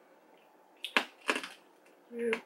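Candy being crunched between teeth while chewing: two short bursts of sharp crunching about a second in and again just after.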